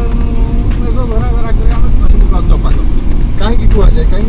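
Steady low rumble of a car driving at speed on a highway, heard from inside the car, with a voice over it.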